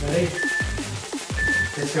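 Electronic dance music with a steady kick-drum beat, over which an interval timer sounds two short, high countdown beeps a second apart, marking the last seconds of a rest period before the next work interval.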